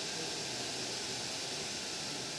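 Commercial server CPU cooler's fan running at speed: a steady, airy hiss. It is the loud reference against which the kinetic cooler, about 20 dB quieter, is demonstrated.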